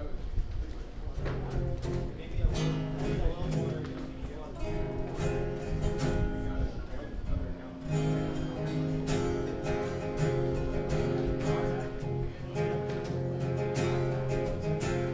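Two acoustic guitars strumming chords, the chord changing every two seconds or so.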